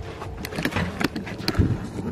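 A few sharp knocks and clicks at a front door, with a duller thump about one and a half seconds in, over a steady low background noise.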